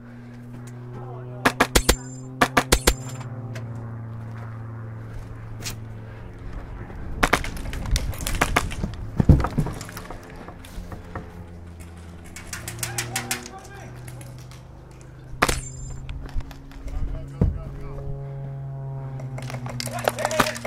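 Several short bursts of rapid airsoft gun fire, strings of sharp snapping shots, with the densest stretch in the middle, over steady background music.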